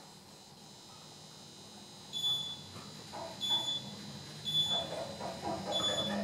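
Richmond traction elevator car travelling up with a steady low hum, and a short high floor-passing beep sounding four times about a second and a quarter apart as it passes each floor.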